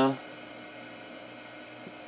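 A drawn-out spoken 'uh' ends at the very start, leaving a faint, steady background hum and hiss.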